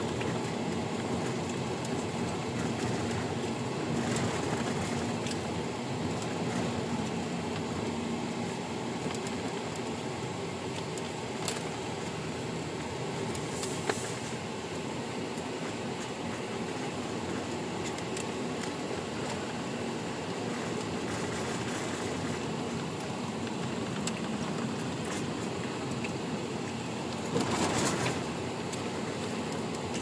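Steady road and engine noise heard inside the cabin of a moving car, with a few faint clicks and a brief louder rush near the end.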